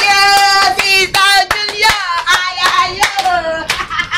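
Several voices singing a welcome song together, with long held notes and a few sharp hand claps.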